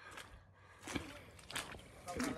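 Faint footsteps on a trail, two soft steps: one about a second in and another about half a second later.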